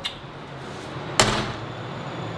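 Apartment front door shutting: one sharp bang a little over a second in, with a short ring-out.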